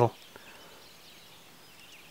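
Faint, steady outdoor ambience over calm water, with a soft click about a third of a second in; the end of a man's voice is heard at the very start.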